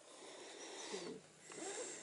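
A slow, faint, audible in-breath through the nose, with a woman softly counting "two" during a guided breathing exercise.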